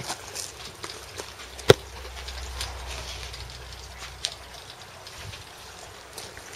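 A single sharp shot from a VSR-10 spring-powered airsoft sniper rifle a little under two seconds in, followed by a fainter click about two and a half seconds later. A low rumble runs for a few seconds after the shot.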